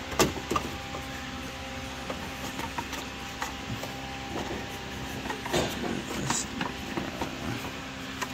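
Plastic radiator fan shroud knocking and scraping against the radiator's top tank as it is lowered and settled into place, in a series of irregular clicks and knocks, the loudest just after the start and a cluster about five to six seconds in. A steady machine hum runs underneath.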